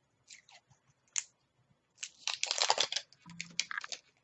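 Mascara packaging being torn and crinkled open by hand: a few small clicks at first, then a loud burst of crinkling and tearing about two seconds in, with more rustling near the end.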